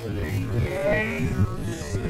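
Voices slowed to a third of normal speed, so they sound deep and drawn out, with a steady low hum underneath.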